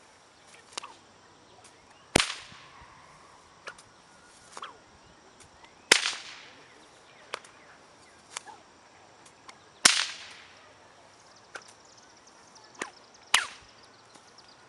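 A whip cracking four times, a loud sharp crack roughly every four seconds, each trailing off briefly, with fainter snaps in between.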